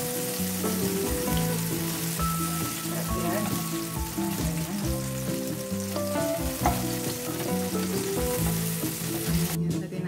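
Halloumi cheese sizzling in hot oil in a frying pan while a slotted spatula turns the slices, with soft music underneath. The sizzle cuts off suddenly near the end.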